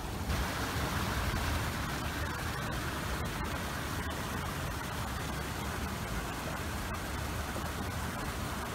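Small creek rushing steadily over rocks in a little cascade.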